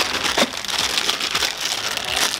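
Thin plastic bag crinkling and rustling as hands handle it and pull it open to get at the wiring harness inside.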